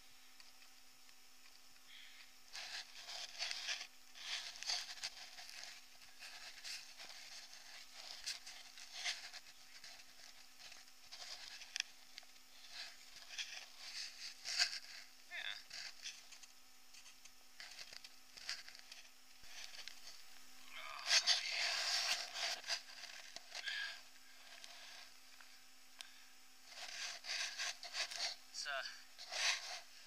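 Footsteps crunching and squelching through wet snow and slush on a trail, a step every second or so, busiest and loudest about two-thirds of the way through.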